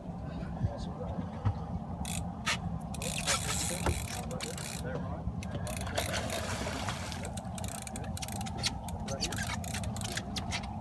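Steady low rumble under scattered light clicks and knocks from fishing tackle on a boat while a hooked kingfish is being played.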